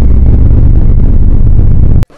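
Extremely loud, distorted, bass-heavy blast of noise, a meme-style 'ear-rape' sound effect, held steady and then cutting off abruptly at the end.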